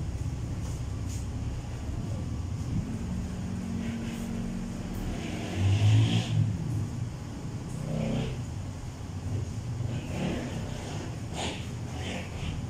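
A motor vehicle's engine running outside, swelling to its loudest about six seconds in over a steady low rumble.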